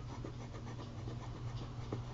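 Steady low hum with a few faint clicks and light scratching from a computer mouse being moved and clicked.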